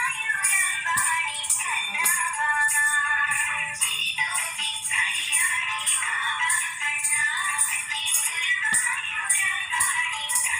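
Recorded Indian devotional song with a singing voice over a steady, quick percussion beat, played for a dance. It sounds thin and tinny, with almost no bass.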